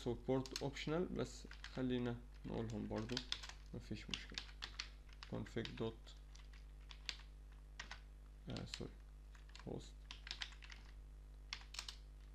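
Typing on a computer keyboard: irregular single key clicks and short runs of clicks, most of them in the second half, with a few words murmured early on.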